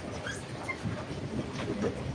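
Faint room tone of a crowded courtroom, with two brief, faint high squeaks in the first second.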